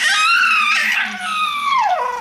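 A baby's long, high-pitched sing-song squeal of contentment, wavering and then sliding down in pitch near the end.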